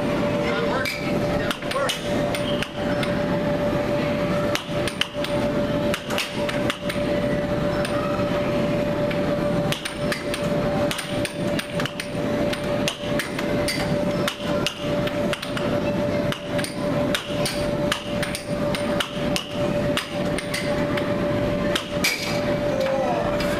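Air hockey puck clacking against the mallets and the table's rails in a fast rally, sharp knocks at an irregular pace, over a steady hum.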